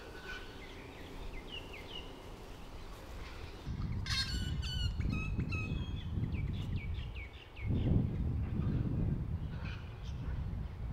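Wild birds chirping and calling, with a run of sharp, repeated descending calls about four seconds in. Under them, a low rumble starts at the same moment and is loudest a little past the eight-second mark.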